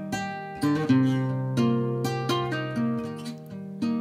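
Guitar playing a slow plucked accompaniment: single notes and chords struck about twice a second and left to ring out.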